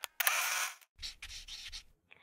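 Edited-in sound effects for an animated photo-frame graphic: a short rushing swish lasting about half a second, then, after a brief gap, about a second of fainter rubbing noise with a few small clicks.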